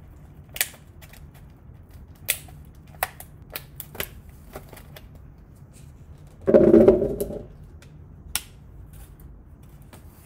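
Clear plastic blueberry clamshell punnet being handled and opened: sharp plastic clicks and taps, with one loud burst of crackling plastic a little past halfway.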